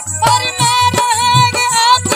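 Live qawwali: a male voice holds a long, wavering sung note over a harmonium, while two dholak drums keep a steady beat with deep bass strokes about twice a second.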